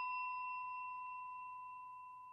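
The ringing tail of a bell-like chime in a logo sound effect: one steady pitch with a few faint higher overtones, fading away slowly.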